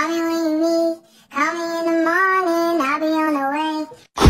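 A high voice singing a wordless tune on held notes that step up and down: a short phrase, a brief break about a second in, then a longer phrase.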